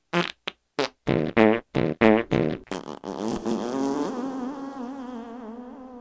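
A quick run of short fart sounds chopped into a rhythm, then one long drawn-out fart from about halfway through that wavers in pitch and slowly trails off.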